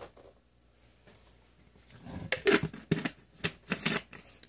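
A quick, irregular run of sharp clicks and rattles from something being handled close by, starting about halfway through after a near-quiet first half.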